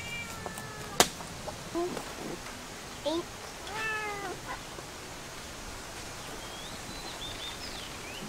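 Orange-and-white kitten meowing several times, the longest and loudest call about four seconds in. A single sharp click about a second in.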